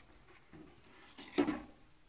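A single short wooden knock about a second and a half in, as the two hardboard halves of a homemade fan-casting pattern are put together; otherwise the room is quiet.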